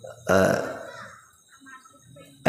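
A man's short, low vocal sound into a PA microphone about a quarter second in, fading over about a second.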